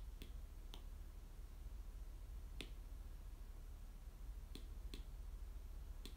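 Five light, sharp clicks at irregular moments, two close together shortly before the end, over a steady low hum and faint hiss.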